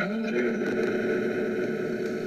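Spirit box sweeping through radio stations: a steady hiss of radio static.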